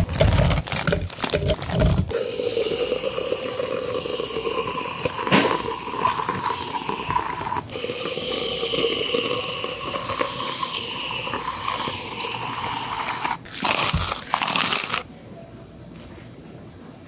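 Fried-egg gummy candies tumbling and rattling into a plastic cup, then a long steady whooshing sound in two stretches, and a loud clatter of ice going into the plastic cups near the end.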